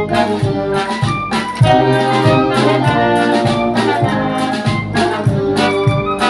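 A Peruvian banda orquesta playing live: trumpets and trombones carrying the melody over drum kit and percussion keeping a steady beat.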